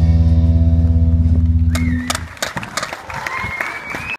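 A rock band's electric guitars and bass hold the final chord of a song, which stops about two seconds in. Scattered clapping follows, with a thin high tone above it.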